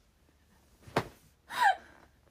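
A young woman's breathless laughter: a sharp gasp about a second in, then a short, loud squeal falling in pitch near the end, from laughing so hard she can hardly breathe.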